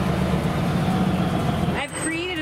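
A motor vehicle's engine idling, a steady low rumble that starts abruptly and cuts off suddenly near the end.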